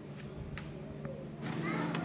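A lull between sentences of speech, filled by faint voices and murmur in the background, with faint voice-like calls near the end.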